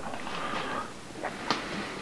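Faint steady room noise with a few light clicks, the sharpest about one and a half seconds in.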